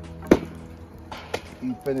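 Sweet potatoes set down onto burning logs in a metal fire basket: one sharp knock about a third of a second in, then two softer knocks a little after a second in.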